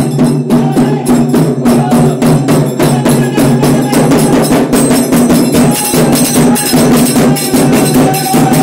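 Live folk percussion: a hand-held skin drum beaten in a rapid, steady rhythm, with small brass hand cymbals clashing along.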